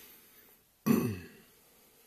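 A man clearing his throat once, a short sound about a second in, after a faint intake of breath.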